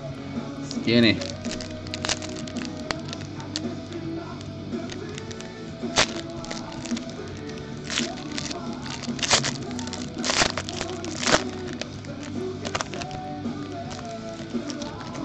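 Background music with sharp, irregular crackling clicks and crinkles over it, from trading-card pack wrappers being torn open and the cards handled.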